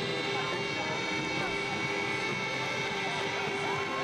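Steady drone of race escort vehicles' engines, held at an even pitch with several constant tones, one tone rising slightly near the end.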